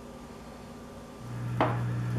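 Quiet room tone. About a second in, a steady low hum comes in, and shortly after there is a single sharp click.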